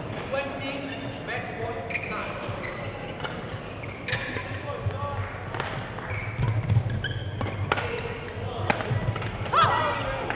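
Badminton rally in a large sports hall: shuttlecock struck by rackets, with sharp hits about a second apart near the end, and players' shoes thudding on the court over the hall's background voices.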